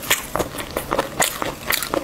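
Close-miked mouth chewing a bite of fried chicken coated in sticky red sauce, with irregular sharp clicks and crunches about four times a second.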